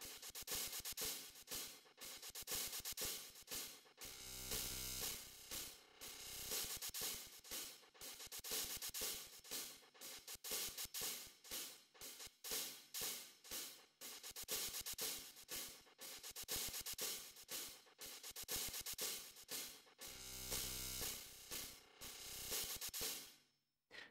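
A programmed drum kit loop, heavy on hi-hats and cymbals, played through the AudioBlast Blast Delay plugin. Its delay time, feedback and filter step through a sequence, so the echoes form a dense run of rapid repeated hits whose spacing and tone keep shifting. A longer low-pitched stretch comes in twice.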